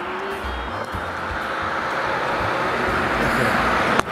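A car approaching along the road, its engine and tyre noise growing steadily louder, then cutting off suddenly at the end.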